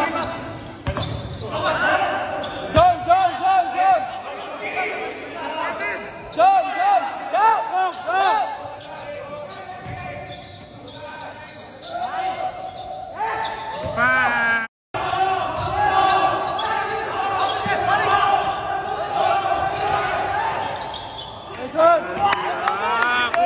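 Basketball scrimmage on a hardwood gym floor: the ball bouncing, sneakers squeaking in short chirps, and players calling out, all echoing in a large hall. The sound drops out for a moment about two-thirds of the way through.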